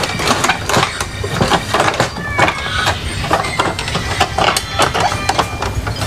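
Plastic casing of an Epson L3210 inkjet printer being lifted and tugged by hand during disassembly: a fast, irregular run of plastic clicks and rattles.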